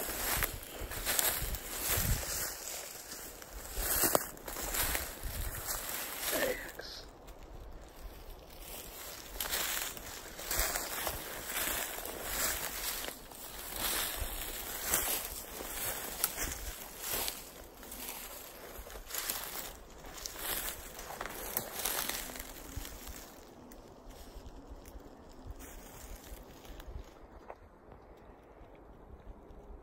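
Footsteps through dry leaf litter and fallen twigs, about one step a second, with rustling of brush; the steps grow quieter near the end.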